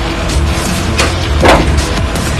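Background music with a heavy, steady bass, and a sudden loud hit about one and a half seconds in.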